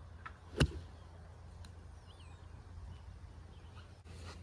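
A six iron striking a golf ball off the tee: one sharp crack about half a second in, over faint outdoor background hum.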